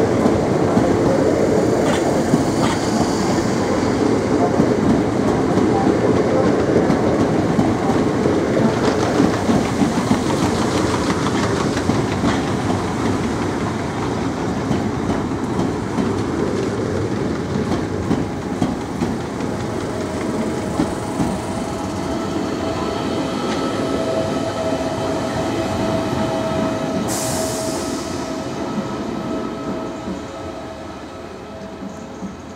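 Southeastern Class 465 Networker electric train running past at close range: a steady rumble of wheels on rail with clickety-clack over the joints, loudest in the first half. Later a steady electric whine rises under it, with a short high hiss near the end.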